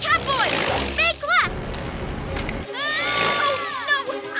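Cartoon soundtrack: short, high-pitched squeaky voice calls that slide down in pitch, a cluster in the first second and a half and one longer call near the end, over background music, with a rushing noise near the start.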